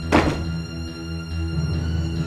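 Background music of sustained strings, with one heavy thump just after the start: a car door shutting.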